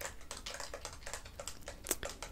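Typing on a computer keyboard: a quick, uneven run of key clicks, with one louder click near the end.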